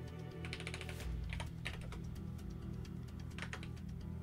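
Computer keyboard typing in quick bursts of keystrokes, about half a second in, again around a second and a half, and once more near the end, over background music with a steady low bass line.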